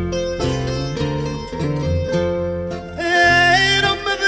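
Fado played on acoustic guitar, plucked notes and chords, with a singing voice coming in on a long, wavering held note about three seconds in.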